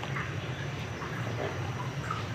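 Pork-hock broth at a rolling boil in a pot, bubbling steadily.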